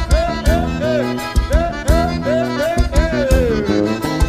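Upbeat background music: a lead melody of short, repeated arching phrases over a steady drum beat, with one note sliding downward near the end.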